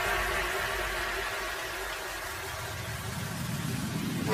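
A steady electronic drone of many held tones over a low hum, dipping slightly around the middle and swelling again near the end.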